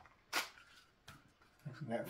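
A sharp click from a rigid plastic pistol holster being handled, followed by a fainter click about a second later.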